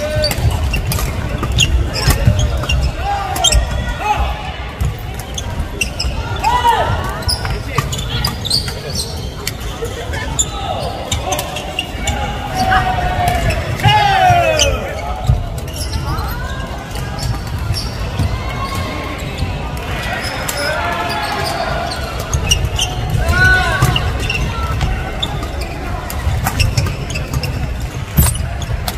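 Badminton doubles rallies on an indoor wooden court: repeated sharp clicks of rackets hitting the shuttlecock and shoes squeaking on the floor, with players' voices and calls. It all echoes in a large sports hall over a steady low rumble.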